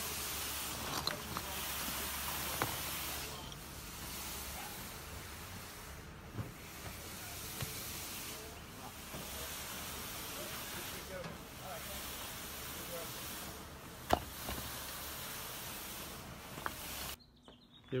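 Concrete pump hose pouring concrete into a footing trench: a steady hissing rush with a few sharp clicks, the loudest about fourteen seconds in. It stops abruptly near the end.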